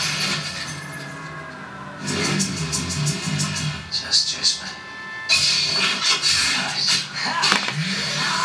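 Action-film trailer soundtrack playing: music with speech and sound effects, changing abruptly about two seconds in and again around five seconds, with a few sharp hits in between.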